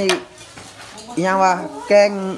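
A metal ladle clinks once against a large aluminium cooking pot of soup at the start. Then a person's voice is heard twice.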